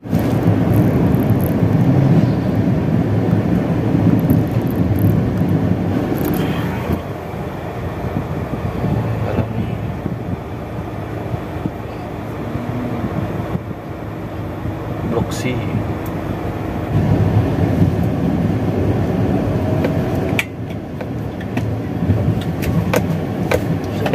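Road and engine noise heard inside a moving car's cabin, a steady low rumble that shifts in level a few times.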